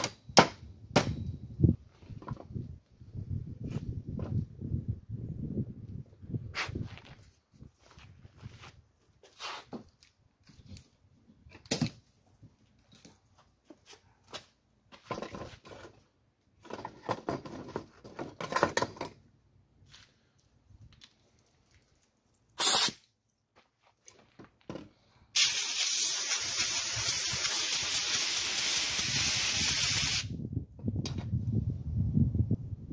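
Hand tools scraping and clinking in short bursts against a steel car vent-window frame, then a compressed-air blow gun hissing: one short blast, and near the end a long steady blast that is the loudest sound.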